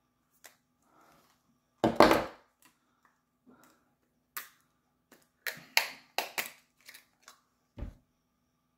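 Clear plastic clamshell wax melt containers being handled and opened: a series of short plastic clicks and snaps, the loudest about two seconds in and a quick cluster between five and a half and six and a half seconds.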